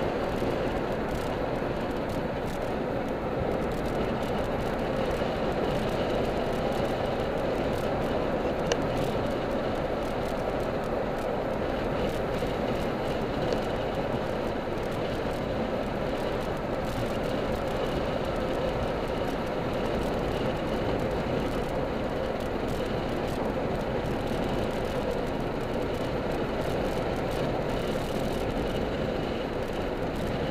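Steady in-cabin driving noise of a car moving along a street: engine and tyre rumble with a band of road roar and no sudden events.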